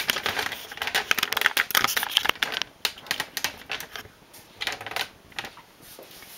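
Rapid metallic clicking and rattling from a domestic knitting machine's needle bed and parts as they are handled, dense for about the first three seconds, then a few scattered clicks.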